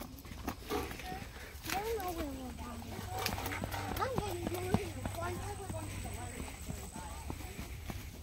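Footsteps crunching on a dirt path, with children's voices calling faintly in the distance, rising and falling in pitch through the middle of the stretch.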